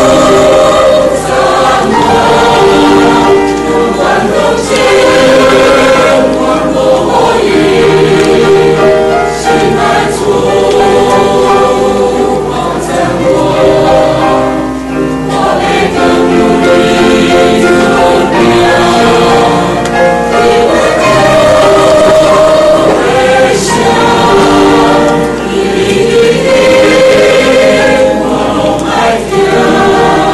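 Mixed choir of men and women singing a hymn, in long phrases with short dips between them.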